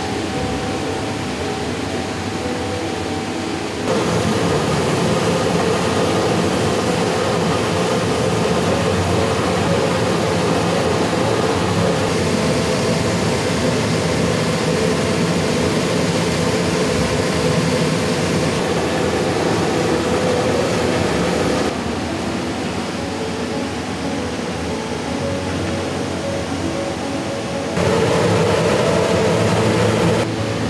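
Steady drone of a heat-treating furnace in which chisel blades are being heated in glowing coals. It steps louder about 4 s in, drops back about 22 s in and rises again near the end.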